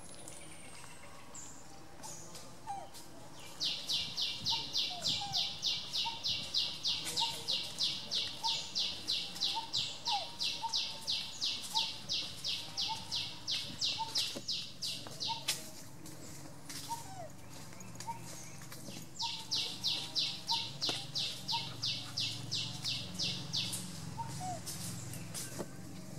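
A high, buzzing animal call pulsing about four times a second, starting a few seconds in, running for about twelve seconds, stopping, then returning for about five seconds. Faint short chirps sound underneath throughout.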